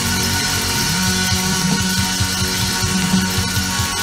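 A live band playing an instrumental passage at steady loudness: electric guitar over bass guitar, keyboards and drums, with no vocals.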